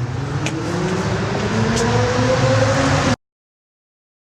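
An electronic dance track's riser: a pitched synth sweep climbing over a wash of noise and a low synth part, growing louder for about three seconds, then cutting off abruptly into silence at the end of the track.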